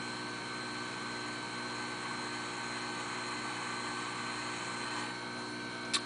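Jeweler's lathe running at a steady speed, its motor and spindle giving an even hum with a steady high whine, while a carbide countersink in a drill runner spots a center hole in the turning stock. A brief click comes right at the end.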